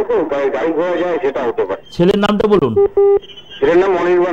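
Speech heard over a telephone line, broken about three seconds in by a brief steady telephone beep.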